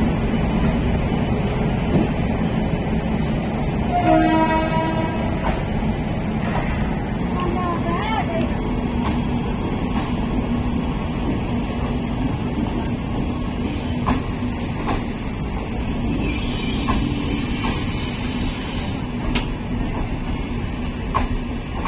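Passenger coaches of the 14707 Ranakpur Express rolling past on the track, with a steady rumble of wheels on rail. A short train horn blast sounds about four seconds in.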